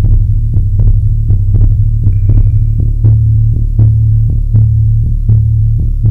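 Industrial electronic music: a loud, throbbing low synth bass drone under a steady ticking pulse of about four ticks a second, with a brief high tone about two seconds in.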